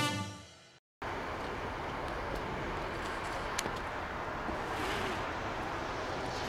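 A brass-band title jingle fades out in the first second. After a short gap it gives way to a steady outdoor background hiss, with one faint click about three and a half seconds in.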